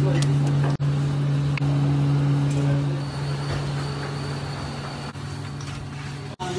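A steady low hum under a hiss of background noise, with a few brief dropouts.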